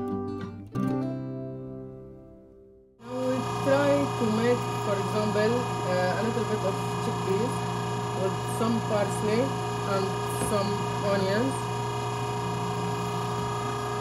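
Plucked-string music fades out over the first three seconds. Then an electric meat grinder comes in suddenly and runs steadily with a hum, grinding soaked chickpeas, parsley and onion into falafel mix.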